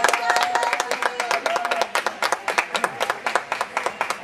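Audience clapping, many quick claps at an irregular pace, over music with a held note and voices in a large gymnasium.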